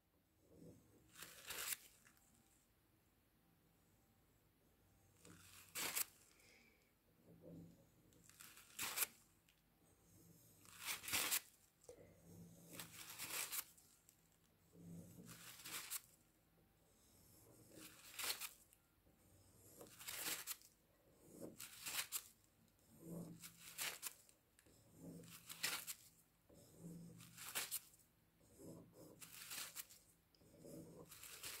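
A series of short, faint scrapes, one every second or so, from a wooden stick being drawn through wet acrylic paint on a stretched canvas to pull out flame shapes.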